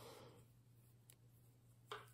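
Near silence over a low steady hum, with a soft rustle at the start and two faint clicks of metal knitting needles, the louder one near the end.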